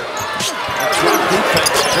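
A basketball dribbled on a hardwood court, a few sharp bounces over the steady noise of an arena crowd.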